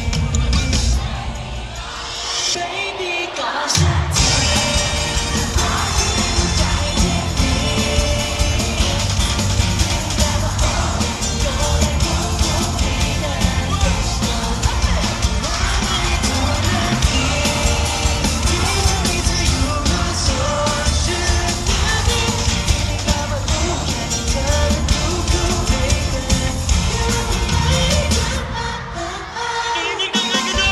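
Thai pop dance song performed on a concert stage: male voices singing over a dance track with a heavy bass beat, through the venue's PA. The bass drops out for a couple of seconds near the start and comes back in with a hit at about four seconds, then thins again just before the end.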